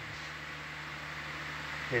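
Steady background hiss with a low electrical or machinery hum, unchanging, in a pause between voices; a voice starts again just before the end.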